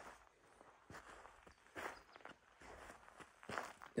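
Faint footsteps of a person walking on loose, pebbly ground, about one step a second.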